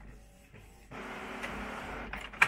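Canon inkjet printer running as it feeds a freshly printed photo sheet out of the output slot. The steady mechanical run sets in about a second in, after a quieter start.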